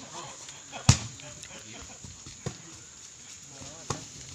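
A volleyball struck by players' hands three times in a rally: sharp smacks about a second and a half apart, the first and loudest about a second in.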